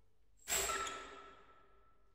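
Orchestra: a single sudden loud stroke out of quiet playing, a bright metallic crash that dies away over about a second, leaving a high tone and a lower tone ringing on faintly.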